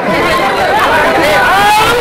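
Crowd of men talking and calling out over one another, many voices at once.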